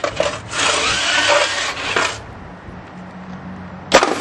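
Featherweight pneumatic-flipper combat robot in a test against a trailer wheel: a rushing, clattering noise with scattered clicks and knocks for about two seconds, then quieter with a low hum, and a sharp bang just before the end.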